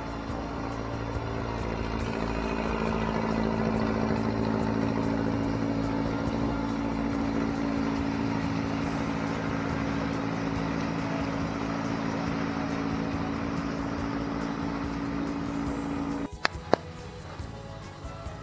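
Atomic 4 four-cylinder gasoline inboard engine running steadily as the boat motors away, a little louder about four seconds in, then easing. The sound cuts off abruptly near the end, followed by a couple of clicks.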